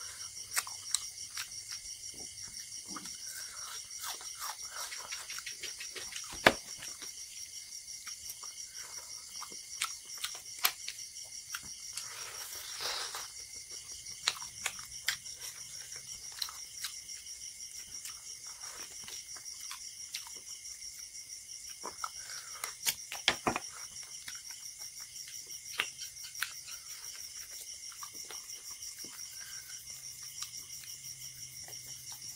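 Close-up eating sounds of rice and curry eaten by hand: wet chewing and lip smacks as scattered sharp clicks, the loudest about six seconds in and a cluster around twenty-three seconds. Crickets chirp steadily behind.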